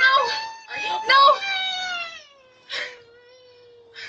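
A toddler crying loudly: a couple of wailing cries, then one long wail that slowly falls in pitch and trails off near the end.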